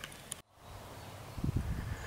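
Faint outdoor background broken by a moment of dead silence just under half a second in, then an irregular low rumble of wind buffeting the microphone.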